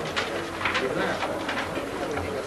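Indistinct men's voices murmuring in a meeting room, with no clear words.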